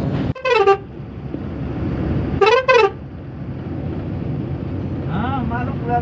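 Dumper truck's horn sounding in three short loud blasts, heard from inside the cab over the steady engine rumble: one falling in pitch just after the start, then two quick ones about two and a half seconds in, each rising and falling in pitch.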